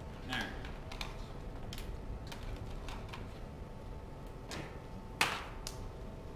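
Irregular small clicks and knocks from scanning equipment and its cables being handled and set down, with the sharpest knock about five seconds in.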